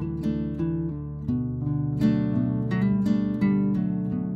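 Background music: acoustic guitar playing plucked and strummed chords at a steady, gentle pace.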